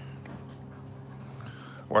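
A dog panting faintly over a steady low hum.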